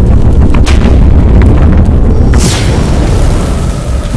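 Cinematic intro/outro sound effects: a loud, deep rumbling boom with scattered crackles, and a whoosh sweeping downward in pitch about two and a half seconds in.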